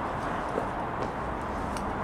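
Steady rumble of road traffic on the A40 viaduct deck overhead, with a few light footsteps on the dirt floor beneath it.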